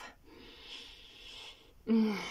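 A woman's long sniff through the nose, lasting about a second and a half, taking in the scent of perfume just sprayed on her skin.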